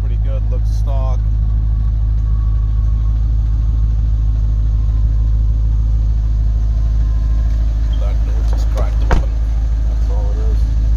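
A Chevrolet Corvette C5's LS1 V8 idling with a steady low rumble. There is a single sharp click about nine seconds in.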